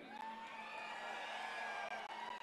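A large rally crowd cheering faintly, with long held calls over a steady hubbub.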